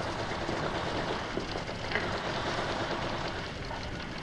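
Steady, even noisy din from a film soundtrack's background, with a faint fine crackle and no single loud event.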